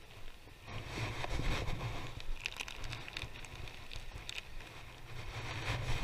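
Seaside ambience off the rocks: wind rumbling on the microphone over the wash of the sea, with a few faint clicks scattered through.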